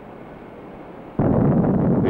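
Faint film hiss, then about a second in a rocket engine's exhaust starts suddenly at launch. It is a loud, steady rush of noise with a deep rumble.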